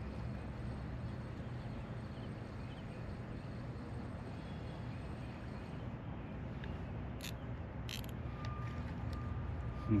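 Steady low hum of distant road traffic, with a few brief clicks a little before the end.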